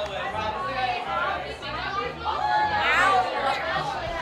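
Party chatter: people talking over one another, with no single clear speaker.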